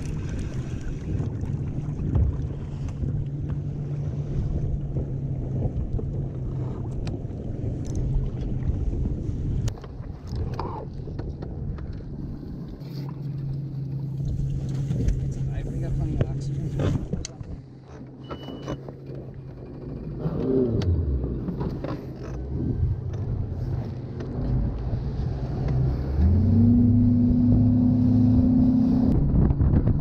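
Bass boat outboard engine running steadily at low speed. Near the end it throttles up in steps and gets louder as the boat gets under way, with a brief falling whine a little before that.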